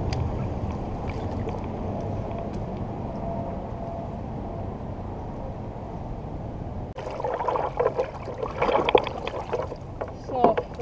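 Water lapping around a float tube as a steady wash. About seven seconds in it gives way to louder, choppy splashing and sloshing.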